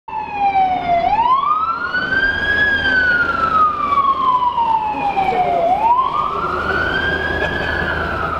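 Emergency vehicle siren wailing slowly up and down. Each cycle rises quickly and falls more slowly, twice through, over steady street and traffic noise.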